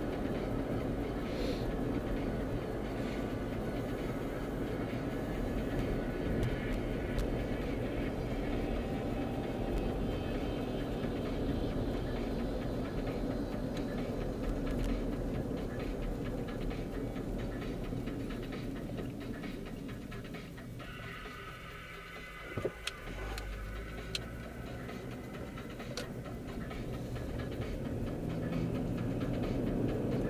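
Steady road and engine rumble inside a car's cabin while driving. It eases off around twenty seconds in, with a few sharp clicks a little after, then builds again near the end.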